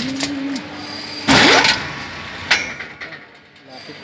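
Construction hoist's electric drive running with a steady hum that stops about half a second in. About a second later comes a short loud burst with a rising whine, then a single click.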